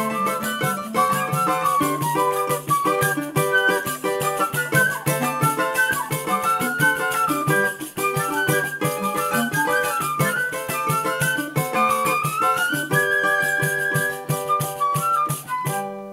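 Live choro ensemble playing: transverse flute leads a quick melody with running scale passages over clarinet, pandeiro strokes and a small plucked string instrument. The tune ends abruptly just before the close.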